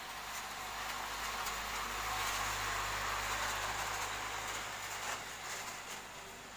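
Loaded Isuzu truck driving slowly past close by: its diesel engine running with tyre noise, growing louder through the middle and easing off near the end.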